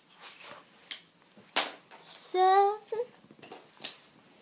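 Light knocks and rustles of shoes being pulled on by hand, with a sharp breathy burst and then a girl's short vocal sound of effort a little past halfway, the loudest sound.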